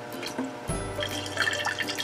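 Water poured from a plastic filter pitcher through a strainer lid into a glass mason jar of soaked radish seeds, filling it with fresh rinse water. Background music plays throughout.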